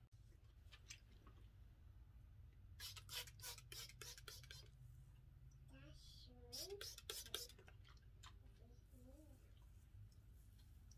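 Faint scratching and clicking from hair being brushed and handled, in two short flurries. A child's voice is faint in the background.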